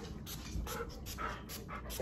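Husky panting with its mouth open, quick short breaths at about four a second.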